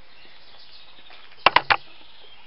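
Faint outdoor background with three quick, sharp clicks in close succession about a second and a half in.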